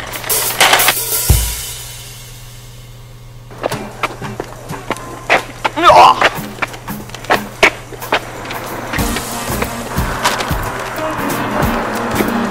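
Metal shopping cart being pushed along the pavement, its wheels and wire frame rattling and clattering. There are a few knocks near the start as the cart is loaded.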